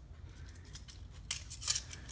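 Small hobby-work handling sounds: a hobby knife lifting a small cut piece of masking tape, with a few short, sharp scratchy clicks, the loudest about a second and a half in.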